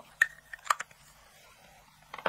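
Small plastic makeup stick being handled: two sharp clicks about half a second apart, with a few lighter ticks, over a faint steady hum.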